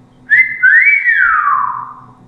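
A man whistling with his mouth: a short high note, then a second note that rises briefly and slides down in a long fall, like a whistle of admiration.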